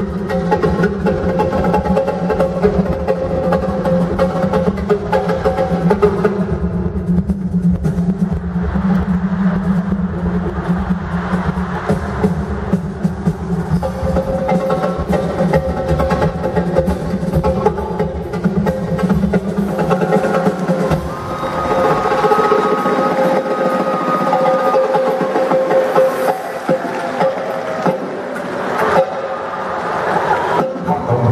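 Live band music with Latin percussion, timbales prominent among the drums. About two-thirds of the way through, the heavy bass drops away and lighter sustained instruments carry on.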